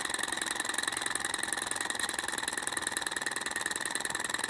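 Tabletop Stirling engine running, its piston and flywheel making a rapid, steady mechanical clatter as it drives a small LED generator by a rubber band. It is turning slowly, held back by too much friction in the owner's view.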